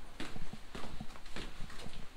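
Footsteps of a person walking on a hard floor, an even pace of about two steps a second.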